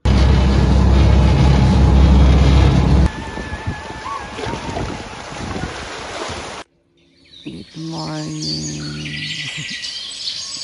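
Waves washing over a rocky shoreline with wind buffeting the microphone, loudest in the first three seconds, then cutting off suddenly. After a brief gap, music with held notes begins.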